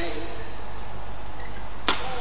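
Badminton racket striking a shuttlecock: a sharp crack near the end, with a fainter hit right at the start, over steady hall noise.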